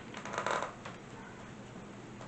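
A door being shut: a short rattling clatter of clicks from its latch and handle in the first second.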